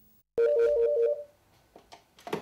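Desk telephone ringing once with an electronic two-tone warble that trills rapidly between two pitches for about a second, then fades: an incoming call to the fire-rescue dispatch desk.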